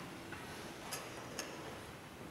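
Two sharp clicks about half a second apart, with a fainter one just before them, over the quiet hum of a large room.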